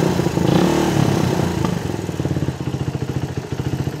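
Suzuki Raider 150 single-cylinder four-stroke engine idling, its speed swelling slightly about half a second in and then settling. The owner puts the idle trouble down to an undercharged battery.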